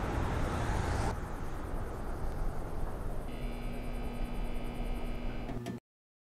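Steady low rumbling noise, like wind or a distant engine. About three seconds in, a faint chord of steady high tones joins it, and everything cuts off abruptly just before the end.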